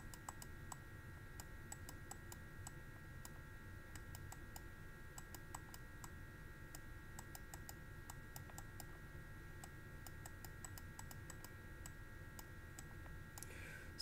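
Many small, irregular clicks and taps of a stylus on a pen tablet as equations are handwritten, over a faint steady high-pitched whine.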